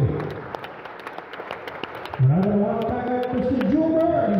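Light, scattered applause from an audience, with sharp individual claps, then about two seconds in a voice starts talking over it.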